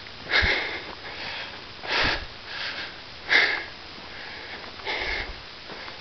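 A person breathing hard close to the microphone while walking: four noisy breaths about a second and a half apart.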